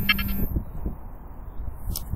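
A short electronic beep from the Trimble survey equipment in the first half second, signalling that the backsight measurement is taken. Low wind rumble on the microphone runs underneath.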